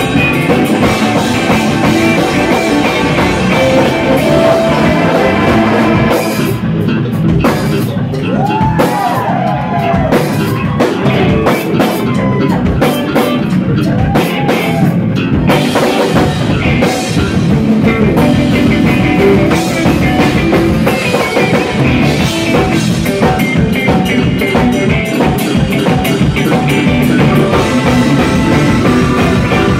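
Live rock band playing: drum kit, electric guitar, bass and keyboard. For a stretch in the middle the drums and cymbals thin out and a lead line bends in pitch, then the full band comes back in.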